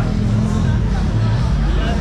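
Busy street ambience: passers-by talking over a steady low rumble of road traffic, with a motorbike on the road among it.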